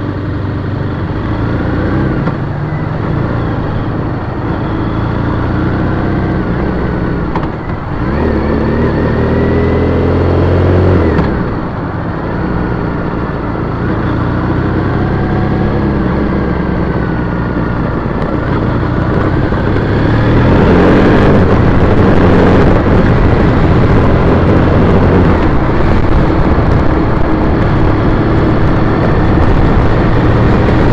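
A 2010 Triumph Bonneville T100's parallel-twin engine is ridden through traffic, its pitch rising and falling with the throttle. It revs up hard and drops sharply at a gear change about eleven seconds in. From about twenty seconds in, steady wind rush on the microphone at road speed takes over.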